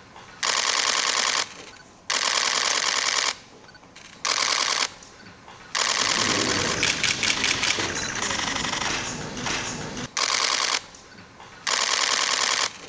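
Press photographers' camera shutters firing in rapid bursts, about six in all. Most bursts last around a second, and one longer run of about four seconds comes in the middle, with faint voices beneath it.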